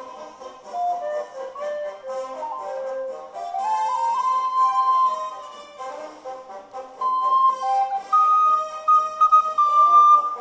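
Plastic soprano recorder playing a melody over a fuller accompaniment track. The line climbs to a long held note about four seconds in and ends on higher held notes, which are the loudest part.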